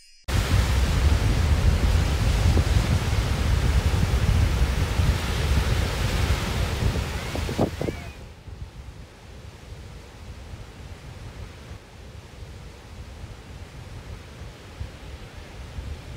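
Sea waves washing on a shore: a loud, steady rush of surf that starts suddenly, then drops to a softer, steady wash about eight seconds in.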